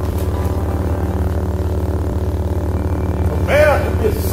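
Steady low electric buzzing hum with a fast, even pulse: the zapping sound effect of a ghost-catching beam. Near the end a voice joins in, its pitch wavering up and down.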